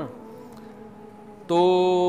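A man's voice over a microphone: a pause with only a faint steady hum, then near the end a single drawn-out syllable held on a flat pitch.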